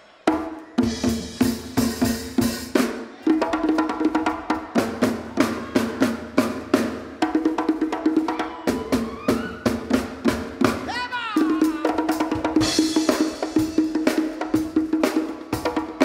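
Live band kicking off a song just after a count-in: drum kit and hand percussion playing a steady driving beat under sustained bass and horn notes, with a sliding note about ten seconds in.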